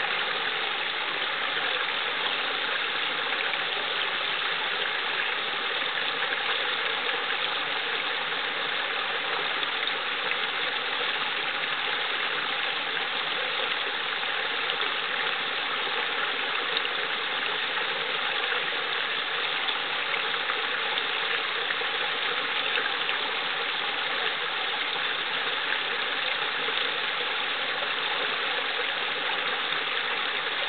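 Small brook spilling over a low rock ledge into a pool: a steady, unbroken rush and babble of water.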